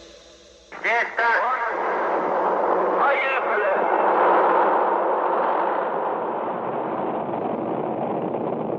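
Rocket launch roar with brief radio voice fragments over it. It starts suddenly about a second in and runs on as a steady noisy roar.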